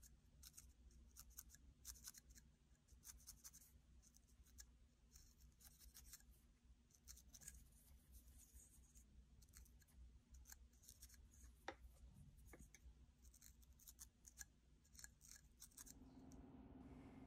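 Faint, irregular scratchy clicks of a felting needle jabbing into wool, several a second, as loose wool ends are tucked in around a wool-wrapped wire armature. A low steady hum lies underneath.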